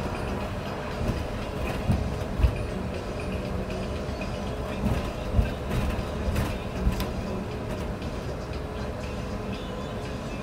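City bus ride heard from inside: steady engine and tyre noise on a wet road, with rattles and a few sharp thumps from bumps, the loudest about two and a half and five and a half seconds in.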